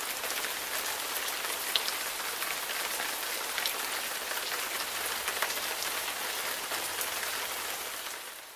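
Steady rain, an even hiss scattered with the fine patter of drops, beginning to fade out near the end.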